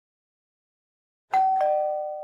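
Two-note ding-dong doorbell chime that comes in suddenly after silence: a higher note, then a lower one a moment later, both left ringing.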